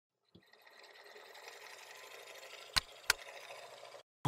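Logo intro sound effect: a faint hiss that builds slowly, then two sharp clicks about a third of a second apart near the end.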